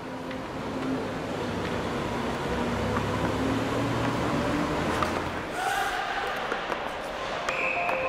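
Ice resurfacer running across the rink: a steady hiss over a low hum that fades out about five and a half seconds in. A few clicks and some steady higher tones then come in.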